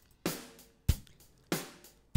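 A multi-track drum loop playing back in Propellerhead Reason 7, its snare also triggering a replacement electronic snare sample in a Kong drum sampler. Three separate drum hits come about two-thirds of a second apart, each dying away quickly.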